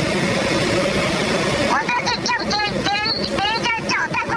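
Voice-disguised, pitch-shifted speech from a recorded phone call. A steady rushing background noise fills the first second and a half, then quick, high-pitched altered speech comes in from about two seconds on.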